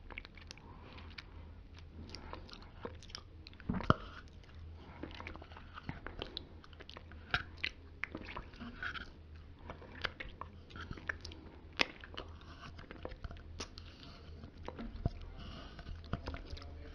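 Close-miked wet mouth sounds from licking Greek yogurt off fingers: soft, irregular lip and tongue smacks and clicks, with a louder smack about four seconds in and another near twelve seconds. A steady low hum runs underneath.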